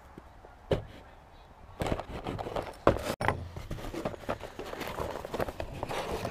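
Cardboard subscription box being handled and opened on a wooden table: a single knock about a second in, then from about two seconds in a run of irregular knocks, scrapes and rustling as the box is tilted and its flaps are pulled open.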